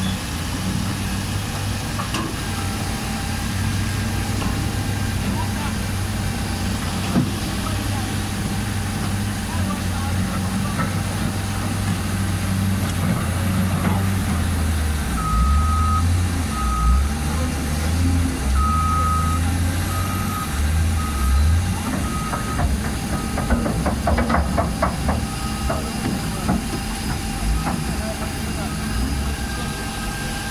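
Caterpillar wheel loader's diesel engine running and working under load, with its reversing alarm beeping in a broken run of short beeps about halfway through. A brief clatter follows a few seconds later.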